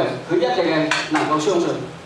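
A man speaking, with a sharp clink-like click about a second in.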